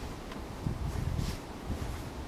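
Wind rumbling on the microphone outdoors: a low, even rush with no engine or tone in it.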